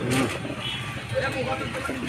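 People talking in the background over the low, steady hum of a motor vehicle engine.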